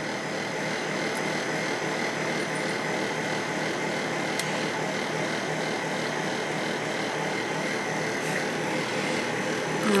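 Steady background hiss with a faint, even high whine; no speech.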